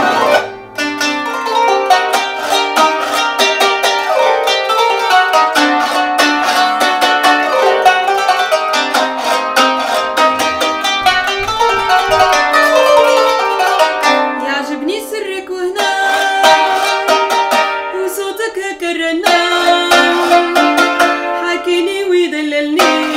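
Qanun, the Arabic plucked zither, played solo with metal finger picks: a steady flow of quick plucked melodic runs, with a few notes sliding in pitch in thinner passages about two-thirds of the way through.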